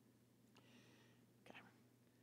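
Near silence: room tone, with one softly spoken word near the end.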